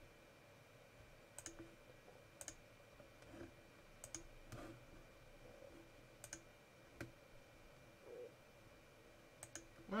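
Faint, irregularly spaced single clicks of a computer mouse button, about seven or eight of them, over near-silent room tone.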